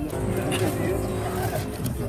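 A man finishing a joking remark and laughing.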